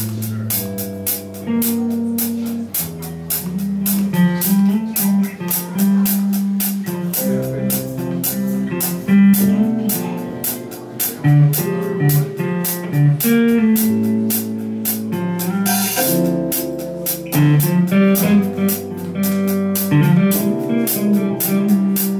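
A small band playing instrumental music live: electric guitar and keyboard over a bass line, with a drum kit keeping a steady cymbal beat.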